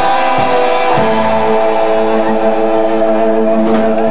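Live roots reggae band playing an instrumental passage: long held keyboard chords over drums and guitar.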